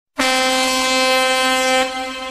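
An air horn sound effect: one long, steady blast that begins just after the start and drops away near the end.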